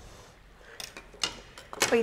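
A few light clicks and knocks of a ladle against an earthenware cooking pot as the sambar is stirred.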